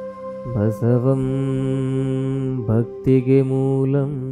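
A man's voice chanting a long, held syllable of a mantra over soft devotional background music with a steady drone. The chant breaks briefly near three seconds in and a second held note begins.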